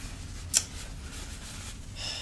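A single sharp click about half a second in, over a steady low background hum.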